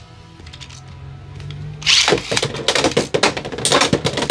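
Beyblade X spinning tops launched into the plastic stadium about two seconds in. After a quiet start, a loud, dense run of clicks and rattles follows as the metal-rimmed tops spin, scrape and clash against each other and the stadium walls.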